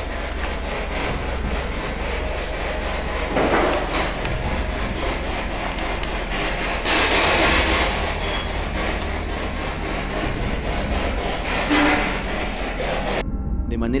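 SB11 spirit box sweeping through radio stations: a continuous choppy static hiss, chopped rapidly and evenly by the sweep, swelling louder three times.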